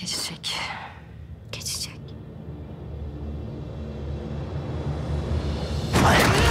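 A whispered voice with breaths in the first two seconds, then a low rumble that swells steadily louder.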